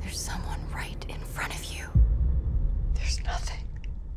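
Whispered voices in a horror film trailer's soundtrack over a low rumble, with a sudden deep boom about halfway through.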